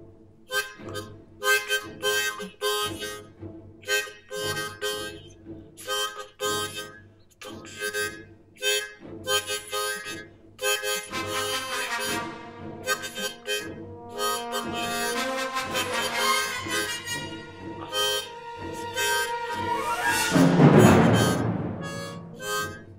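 Hohner harmonica blown in short, choppy chord bursts that follow the rhythm of spoken sentences, standing in for a lecturer's voice. About halfway through, the bursts give way to longer held chords, and the loudest, harshest blast comes near the end.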